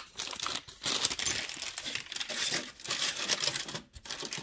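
Brown paper bag being handled, crinkling and rustling irregularly.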